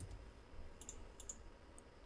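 Faint computer keyboard typing: about five soft, quick keystroke clicks, starting a little under a second in.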